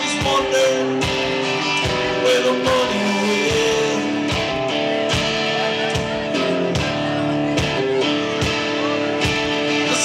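Rock band playing live: guitar over bass and drums with a steady beat.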